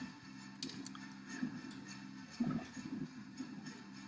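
Faint clicks and light handling noise from small electronic components and a circuit board being picked up at a workbench, over a low steady hum.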